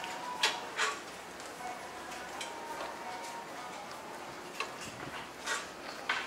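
Quiet ambience of a covered shopping arcade, with faint distant voices and a few short sharp clicks and scuffs, the loudest about half a second and just under a second in.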